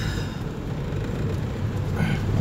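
Off-road vehicle creeping slowly along a rough dirt track, heard from inside the cabin: a steady low engine and tyre rumble.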